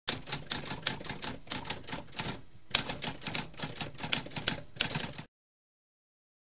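Typewriter keys struck in quick succession, with a brief pause about two and a half seconds in. The typing cuts off suddenly a little after five seconds.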